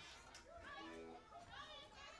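Faint background chatter of voices, including children talking.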